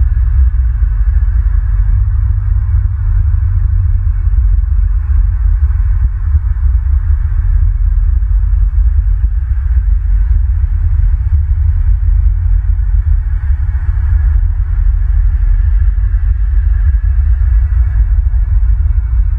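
Steady, loud low rumble with a fainter hiss above it, with no distinct calls or knocks.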